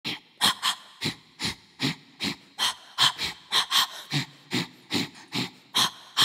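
Sharp, rhythmic vocal breaths or panted 'huh' sounds, about two and a half a second with some doubled, used as the pulsing beat of a music track.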